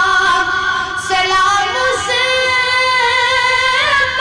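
A boy's voice singing a naat, an Urdu devotional hymn, in long held notes that bend slightly as the melody moves.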